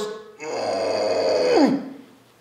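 A man's long, drawn-out vocal groan on the exhale while pushing a cable pushdown handle all the way down, sliding down in pitch at the end.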